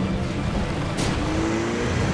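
Cartoon sound effect of a pickup truck's engine running hard over a rough, holed dirt track, with a short sharp swish about a second in and the engine note rising after it.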